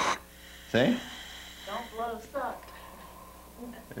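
Faint breathing through a scuba regulator's mouthpiece, with a short spoken word about a second in.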